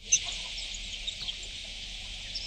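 Small birds chirping over a steady hiss, heard as thin, band-limited background sound through a live reporter's broadcast feed just after it opens.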